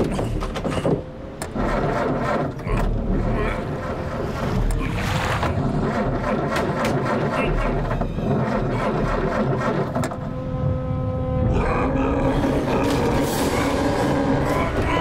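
Cartoon soundtrack of a motorboat's outboard motor running, mixed with background music, short vocal noises and clicking sound effects.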